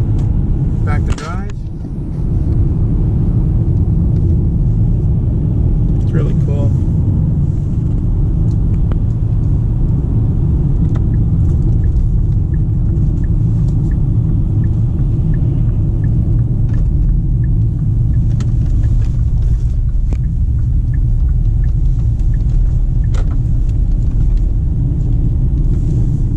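Steady low rumble of engine and road noise inside the cabin of a 2018 Kia Optima LX with a 2.4-litre four-cylinder engine, cruising at about 60 km/h. The level dips briefly about a second in.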